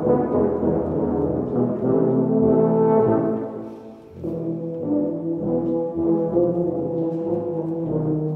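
A small ensemble of tubas and euphoniums playing sustained chords together, with a brief break between phrases about four seconds in.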